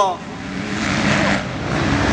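Motocross motorcycle engine running at a distance, growing louder over the first second as the bike approaches.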